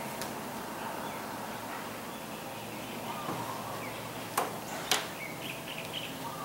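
Quiet room ambience with faint bird chirps, broken by two sharp clicks about half a second apart in the second half.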